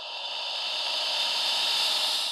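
A smooth rushing hiss, with no clicks or steps in it, that swells gradually louder and peaks near the end.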